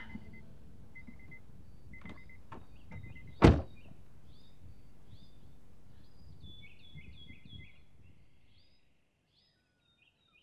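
A car door shuts with one loud thunk about three and a half seconds in, after a few short beeps of the car's chime. Birds chirp after it, and all fades out near the end.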